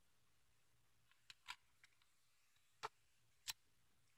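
Near silence: room tone with a few short, faint clicks in the second half.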